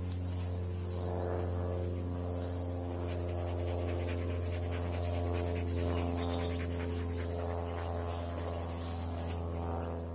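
A steady low hum with evenly spaced overtones runs throughout under a constant high insect buzz, with a dog's faint panting beneath.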